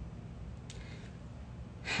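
A woman's brief, faint breath about three quarters of a second in, over a steady low room hum; her speech starts just before the end.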